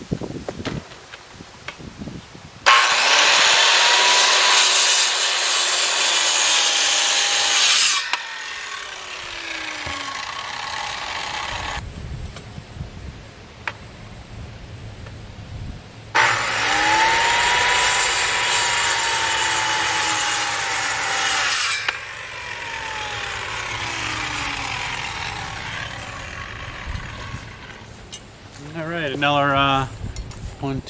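Corded circular saw cutting through a wooden fence post twice, each cut lasting about five seconds, with the motor's pitch sagging under load. After each cut come a few seconds of quieter sound.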